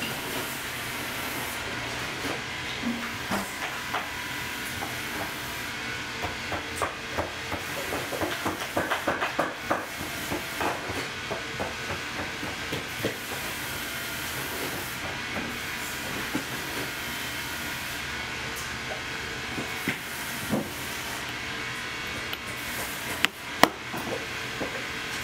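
Hands handling and pressing leather and rubber patch pieces onto a worn boot insole: soft scuffs and small taps over a steady hiss, with a quick run of clicks midway and one sharp knock near the end.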